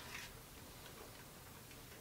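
Near silence: faint room tone, with one small click right at the start.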